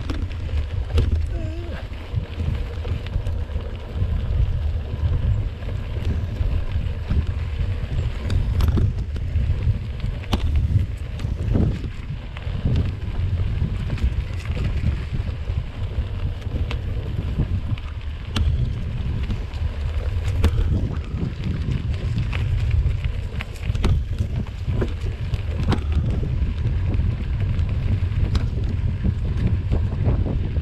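Wind buffeting the microphone of a camera mounted on a moving mountain bike. Underneath are the bike's knobby tyres rolling over a dirt trail and scattered clicks and knocks as it goes over bumps.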